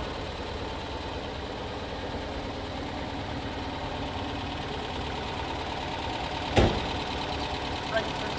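The 1959 Citroën 2CV's 425cc air-cooled flat-twin engine idling steadily. A single sharp thump sounds about six and a half seconds in.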